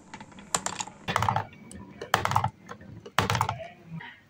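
Glass marble rolling through a wavy groove carved in a wooden track, clattering against the wooden walls of the bends. The clatter comes in four short runs of rapid clicks, about one a second.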